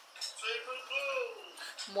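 Faint, thin-sounding speech playing from a phone's small speaker: the delayed audio of a livestream.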